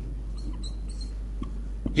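A pause in speech: a steady low hum, with a few faint, brief high-pitched squeaks about half a second in and a couple of soft clicks near the end.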